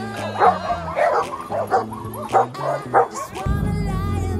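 Dogs barking repeatedly, about twice a second, over background music that grows louder near the end.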